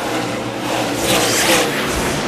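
NASCAR Cup stock cars' V8 engines running as a pack of cars passes on the track: a steady, dense layered engine noise.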